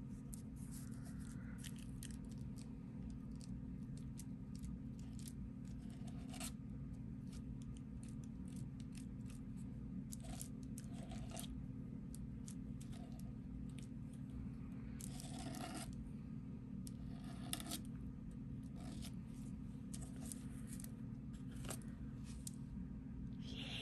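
Metal palette knife scraping modeling paste across a plastic stencil: faint, scattered short scrapes and taps, with a couple of longer scraping strokes about two-thirds of the way through, over a steady low hum.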